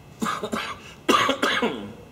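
A man coughing twice, the second cough louder.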